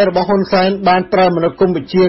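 Speech only: a news narrator reading continuously in Khmer.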